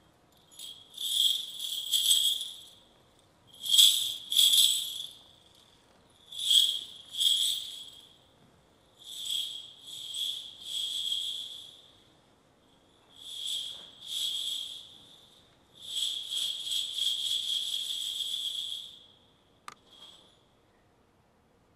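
High, shimmering jingling rattle coming in six swells, each one to three seconds long with quiet gaps between, the last and longest just before a single sharp click near the end.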